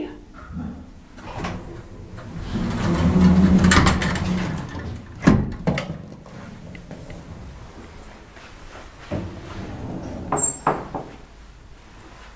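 Elevator's sliding car door opening: a rumble that swells over a few seconds and ends in a sharp knock about five seconds in. Near the end come a few clicks and knocks as the hinged landing door is pushed open.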